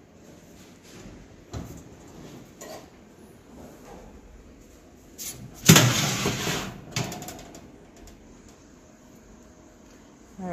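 Oven door opening and the metal oven rack with the cake pan being pulled out. A few light knocks come first, then a metal scrape lasting about a second just past the middle, ending in a click.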